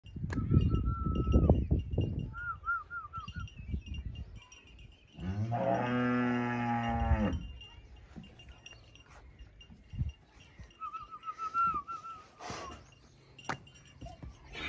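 A cow moos once: a single long, low call lasting about two seconds, about five seconds in.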